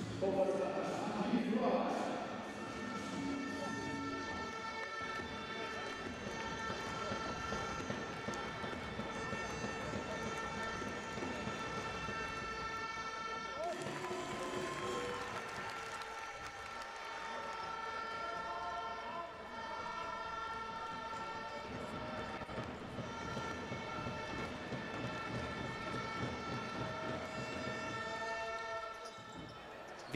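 Basketball arena ambience during a stoppage in play: crowd voices and murmur under a steady, sustained chord of tones from the arena's sound system, somewhat louder in the first two seconds.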